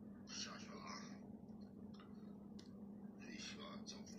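Faint low voices, two short snatches of quiet talk, over a steady low hum.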